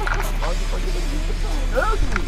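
Indistinct voices talking, with music underneath.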